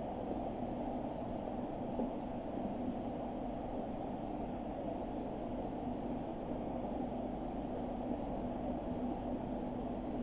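Steady, low background noise of the show-jumping arena, an even hiss with a faint hum and no distinct events.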